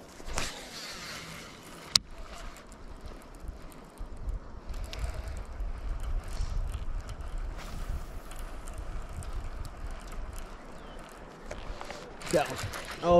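Wind noise on the microphone, a low uneven rumble, with a single sharp click about two seconds in.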